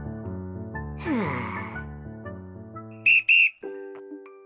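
Soft piano background music with cartoon sound effects. About a second in there is a swish with a falling pitch. Just after three seconds come two short, sharp whistle toots, the loudest sounds here, and then the music switches to a lighter bell-like tune.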